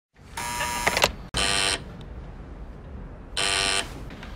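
Electronic door intercom buzzer sounding three times: a longer buzz, then two short ones, over a low room hum.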